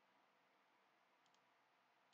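Near silence: faint room hiss, with one quick, faint double click of a computer mouse a little past halfway.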